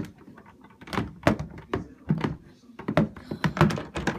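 A stuck door rattling and knocking in its frame as it is tugged without opening: a string of thuds, two or three a second, the loudest a little over a second in and near the end.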